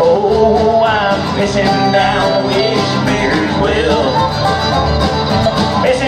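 Live country band playing an instrumental passage, with fiddle, acoustic guitar, upright bass and drum, and bending melody lines over a steady bass.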